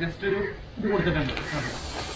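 Nylon tent fabric rustling in a steady hiss as the tent is lifted off the ground, coming in about two-thirds of the way through, over a man's voice.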